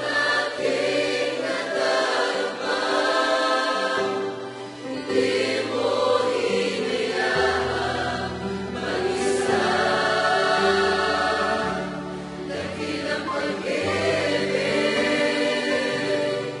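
A large mixed choir of young men and women singing a Tagalog worship song in full voice, over an accompaniment whose low bass notes shift every second or two.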